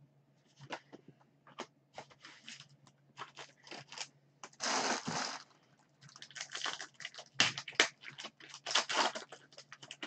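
A 2020 Topps Chrome trading-card pack's wrapper being torn open and crinkled: a string of short crackles, with one longer tear about five seconds in.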